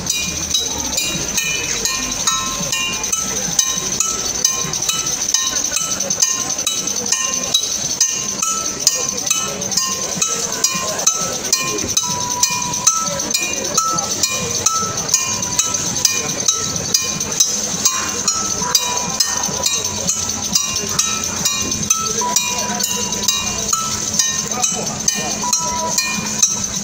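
Hand percussion playing a steady beat, with a metallic bell-like strike about twice a second.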